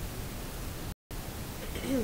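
Steady hiss of room and recording noise in a pause in speech, cutting to dead silence for a split second about halfway through. A voice starts faintly just at the end.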